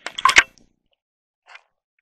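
A few sharp clicks or knocks in the first half-second, then dead silence broken only by one faint short tick about a second and a half in.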